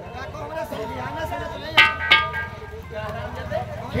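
Two sharp metallic clinks that ring briefly, about a third of a second apart, just under two seconds in, over a faint murmur of voices.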